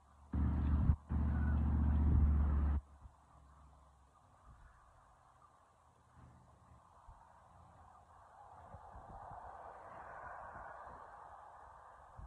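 Strong wind buffeting the microphone: a loud, low rumbling gust lasting about two and a half seconds, broken briefly near its start. It settles to a quieter rush of wind that swells again near the end.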